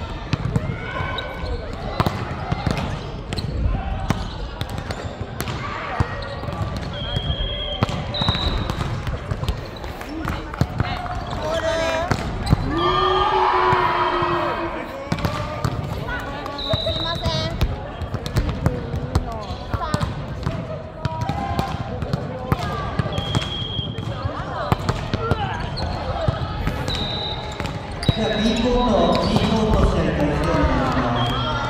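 An indoor volleyball rally on a hardwood court: sharp slaps of hands striking the ball and short high squeaks of shoes on the floor, with players' shouts and calls ringing in the large hall. The voices swell twice, about halfway through and again near the end.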